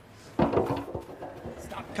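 Arena crowd noise and voices that come in suddenly about half a second in. Over them is a run of dull knocks, the dog's paws striking the planks as it runs up the agility dog walk.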